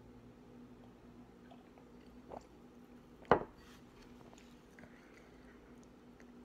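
A person drinking soda from a glass: faint swallowing, then one sharp knock about three seconds in as the glass is set down on a wooden table.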